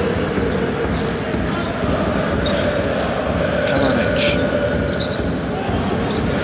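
Basketball being dribbled on a hardwood court, over the steady noise of an arena crowd.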